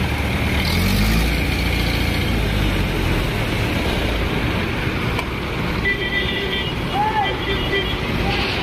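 Highway traffic: cars and heavy trucks passing steadily, with a continuous low rumble.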